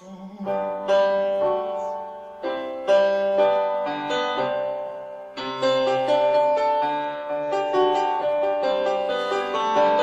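Grand piano playing a slow instrumental passage of full chords, each struck and left to ring, with new chords every second or so and the playing growing louder toward the end.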